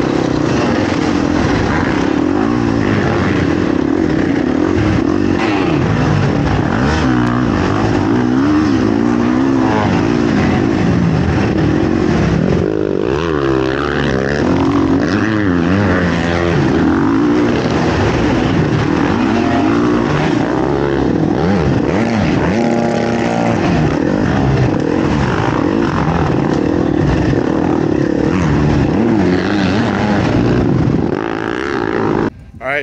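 Several dirt bike engines revving hard during an arenacross race, their pitch rising and falling with the throttle, several at once.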